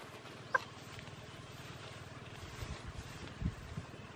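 A trapped rooster gives one short call about half a second in. A few low thumps follow in the second half.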